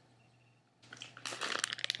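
Near silence for about the first second, then thin plastic packaging crinkling and crackling in rapid irregular clicks as it is handled.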